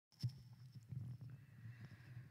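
Faint low hum with scattered soft clicks and knocks, the loudest a single knock just after the start.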